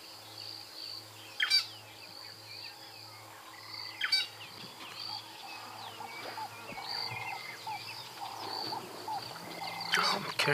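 Bush ambience: many small birds chirping over a steady, high-pitched insect trill, with two louder sharp calls about one and a half and four seconds in.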